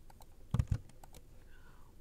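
Computer keyboard keystrokes: a few light clicks, then two louder knocks just after half a second in, then more scattered light clicks.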